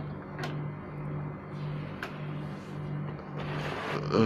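A steady low machine hum that swells and fades about one and a half times a second, with a couple of faint clicks.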